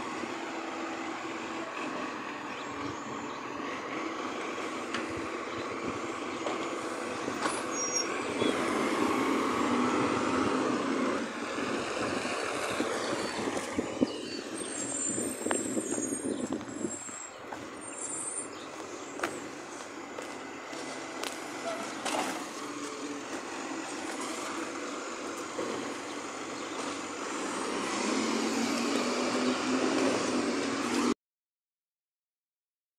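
Garbage truck's diesel engine running as it drives along a street: a steady rumble that grows louder near the end.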